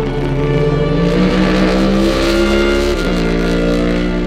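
NASCAR Next Gen stock car's V8 engine accelerating, its pitch rising steadily, then dropping sharply at a gear change about three seconds in, heard under background music.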